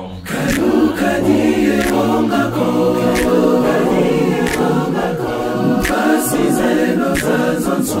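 A male vocal group singing a gospel song in close harmony, a cappella, several voices layered together. The voices break off briefly at the very start and then come back in.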